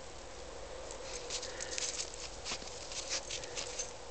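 Footsteps crunching in fresh snow, starting about a second in: clusters of sharp crackles roughly every half second over a faint steady background hiss.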